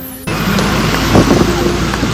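Bus running on the road, heard from inside the passenger cabin: steady engine and road rumble that comes in suddenly about a quarter-second in, with voices over it.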